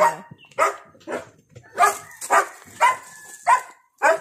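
A dog barking: about six short, sharp barks spread through a few seconds.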